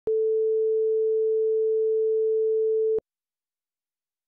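Steady electronic reference tone of a single pitch accompanying a TV production slate, starting abruptly and cutting off sharply about three seconds in.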